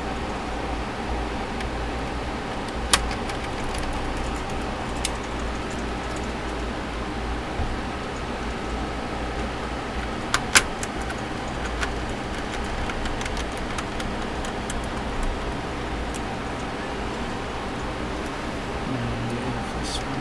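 Steady low hum with a few sharp clicks, the loudest about ten and a half seconds in, as hands work the screws and plastic parts of a laptop's palmrest.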